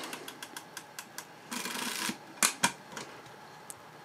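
Film advance of a 1932 Rolleiflex Old Standard twin-lens reflex being wound by hand, a run of small mechanical clicks with a short rasping stretch a little before the middle and two sharper clicks just after it, as the backing paper is wound on toward frame 1.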